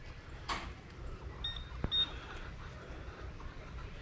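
Two short, high-pitched electronic beeps about half a second apart from a metal detector signalling a target, over faint outdoor background.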